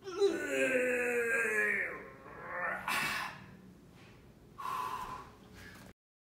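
A man's long groan of effort, falling in pitch over about two seconds, from the strain of push-ups. It is followed by a sharp breath and a shorter gasping exhale near the end.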